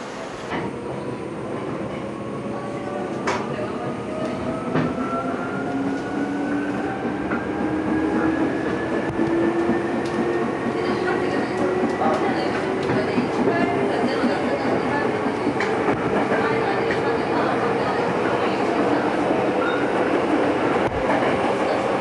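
Electric commuter train pulling away and gathering speed, heard from inside the carriage: the motor whine rises steadily in pitch over the running rumble of the cars. Occasional clicks come from the wheels.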